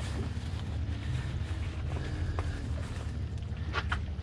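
Steady low rumble of background noise on a small fishing boat on open water, with a few faint ticks.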